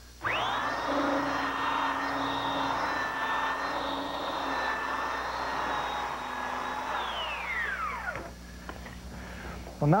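Portable electric belt sander switched on, its motor whining up to speed within a fraction of a second. It then runs steadily, the belt abrading a wooden bed post to smooth out saw marks. About seven seconds in it is switched off and winds down over about a second, its whine falling in pitch.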